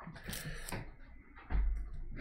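Handling noises at a painting table: short scratchy scrapes and clicks, then a low thump about one and a half seconds in.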